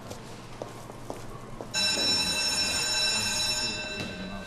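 A sustained electronic tone, several steady high pitches sounding together, comes in suddenly about halfway through, holds for about two seconds, then fades. Before it there is only low shop ambience with a few faint clicks.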